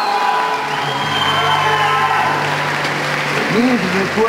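Audience applauding and cheering, with a few shouts near the end, while background music starts up about half a second in.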